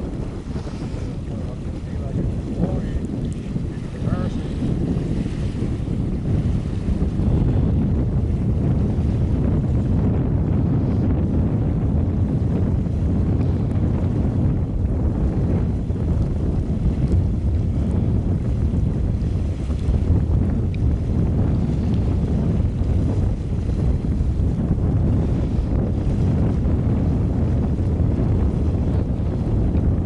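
Wind buffeting the camcorder microphone: a steady low rumble of noise that grows a little louder after about seven seconds.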